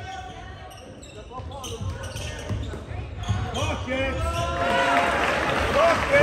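Basketball dribbling on a hardwood gym floor during a game, with scattered shouts and voices echoing in the hall. The crowd noise builds through the second half.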